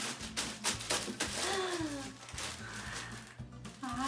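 Crinkling of a plastic gift bag as it is handled and opened at the top, in a run of quick crackles, over background music.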